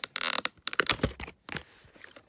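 Plastic VHS clamshell case being opened and handled: a short scraping rub near the start, then a quick run of sharp plastic clicks and taps that dies away about halfway through.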